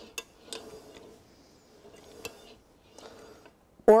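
A few faint, sparse metallic clicks and clinks, four or five light ticks spread over the few seconds, from the metal base and wheel steering of a studio camera pedestal as it is handled.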